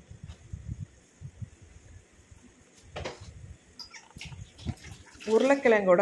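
Coffee-powder water boiling in an iron pan around freshly added grated potato, bubbling faintly with small pops and crackles. A single sharper knock about three seconds in.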